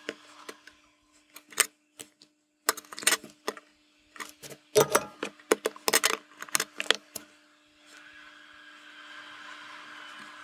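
Flush cutters snipping the excess resistor leads off the back of a through-hole circuit board: a string of sharp clicks and taps over several seconds, stopping about seven seconds in, after which a faint steady hiss remains.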